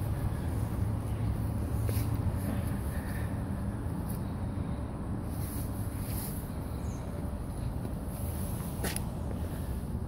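Pontiac Firebird Trans Am's V8 engine idling steadily, with a single sharp click near the end.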